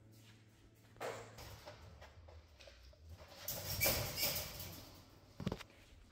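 German Shepherd chewing and crunching a raw chicken drumstick bone in irregular bursts, loudest in the middle, with one sharp knock near the end.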